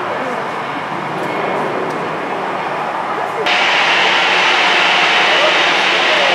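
Steady rushing airport noise with faint voices in the background. About halfway through, it switches abruptly to louder, hissier jet engine noise from an Airbus A320-family airliner taxiing at low thrust.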